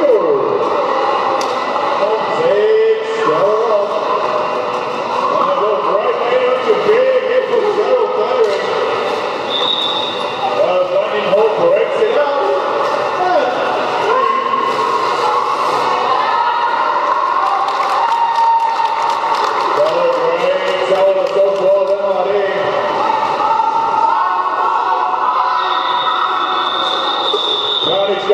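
Roller derby jam: quad roller skates rumbling on a wooden sports-hall floor, with knocks of skaters and a continuous mix of shouting voices from skaters and onlookers. A brief high whistle-like tone sounds about ten seconds in and again, longer, near the end.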